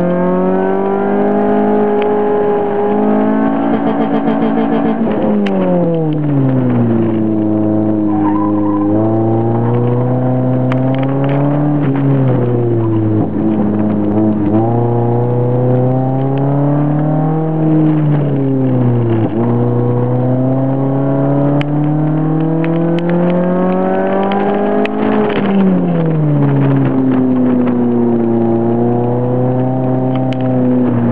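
Honda CRX Si's four-cylinder engine heard from inside the cabin under hard driving, revs climbing and then dropping sharply, again and again, as the car accelerates and slows between corners.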